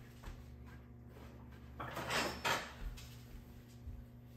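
Brief kitchen handling noise: a short rustling scrape about halfway through, in two quick pulses, with a few faint taps, over a faint steady low hum.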